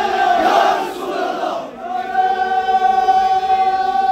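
Crowd of men chanting protest slogans in unison: a ragged surge of shouting for the first second and a half, a brief drop, then a long held chanted note from about two seconds in.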